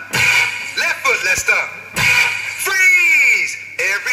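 Electronic dance track played over a loudspeaker system: chopped vocal samples that bend up and down in pitch over a beat, with one long falling vocal swoop about three seconds in.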